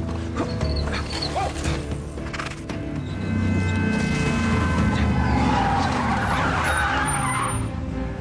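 Background music score, joined about halfway through by a car's tyres squealing as it brakes hard, lasting a couple of seconds before cutting off near the end.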